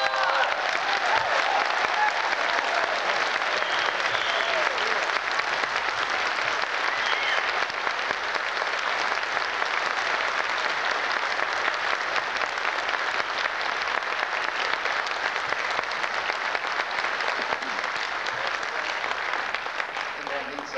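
Audience applauding for a barbershop quartet, dense steady clapping that starts as the held a cappella closing chord cuts off and eases slightly toward the end.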